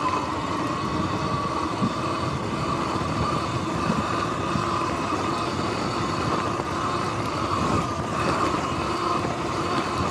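Sur-Ron X electric dirt bike riding over grass and dirt: the steady whine of its electric motor and drive, over tyre rumble and small bumps from the rough ground, swelling slightly about eight seconds in.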